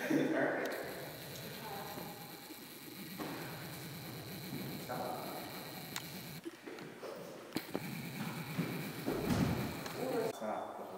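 Indistinct voices in a room, with a few sharp knocks and thumps, the loudest a dull low thump near the end.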